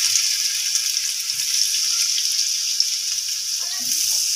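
Flour-coated carrot sticks frying in hot oil in a wok: a steady sizzle with fine crackling.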